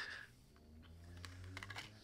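A laugh trails off at the start, then a few faint clicks and light taps sound over a faint low hum.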